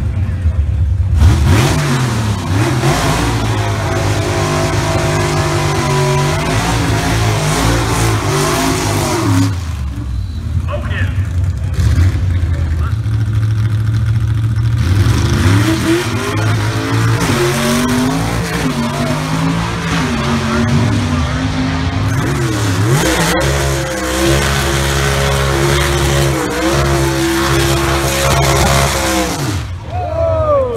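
Gasser drag-race cars' engines running and revving, their pitch repeatedly rising and falling, with voices alongside.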